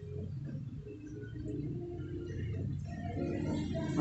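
Music playing faintly from a Bluetooth speaker's MP3/FM player board, switched on to test it: the speaker works again after its charging port was repaired.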